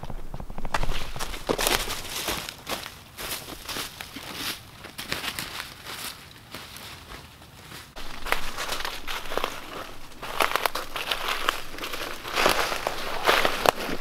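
Footsteps crunching and rustling through dry fallen leaves and twigs: an uneven run of steps with a short lull about halfway through.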